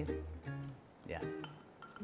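Soft background music, with a glass bowl clinking against a nonstick frying pan as sliced Chinese chorizo is scraped out of it with a wooden spoon.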